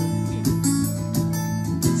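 Acoustic guitar strummed a few times between sung lines, its chords ringing on.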